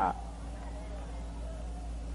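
A pause in a recorded sermon: the last of the preacher's word dies away at the very start, then a steady low hum and hiss of the recording, with faint indistinct voices in the background.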